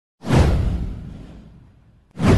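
A whoosh sound effect with a deep boom underneath, starting suddenly just after the start, sweeping downward and fading away over about a second and a half.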